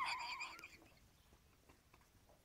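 A short, high, wavering squeak from the dog, dipping slightly in pitch and fading out within the first second.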